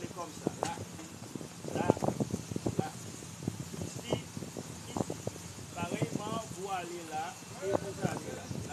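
Irregular sharp knocks of hands striking a palm tree trunk, with short bits of a voice between them.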